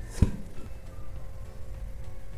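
A single thud about a quarter second in as a stovetop-baked corn cake is turned out of an upturned nonstick pan onto a plate. Soft background music underneath.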